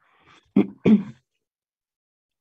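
A woman clearing her throat twice in quick succession, after a faint intake of breath.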